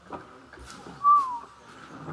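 A single short whistle-like tone about a second in, clear and steady, dipping slightly in pitch as it ends.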